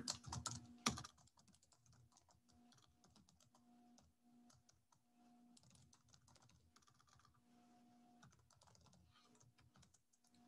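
Faint typing on a computer keyboard: a scattered run of soft key clicks, with a louder click about a second in.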